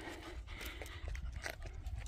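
Panting breaths, labouring on a steep uphill climb, over a low rumble on the microphone.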